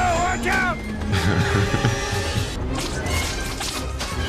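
Movie soundtrack of a runaway-train action scene: dramatic music over the steady low rumble of the speeding train.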